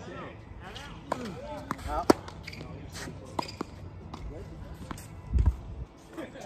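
Tennis ball struck by rackets and bouncing on a hard court: a handful of sharp pops, the loudest about two seconds in. A low thump comes near the end, with voices in the background.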